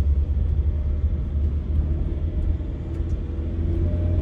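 Steady low road rumble of a car being driven, heard from inside the cabin.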